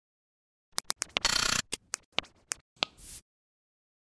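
A quick, irregular run of about eight sharp mechanical-sounding clicks, with a short rushing noise about a second in and a shorter one near three seconds.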